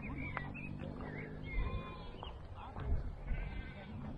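Outdoor wind rumbling on the microphone, with a few short high chirping calls and one brief held call near the end.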